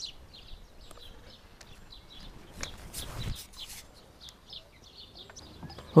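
Small birds chirping faintly in the background, with a few soft knocks and rustles of handling about halfway through.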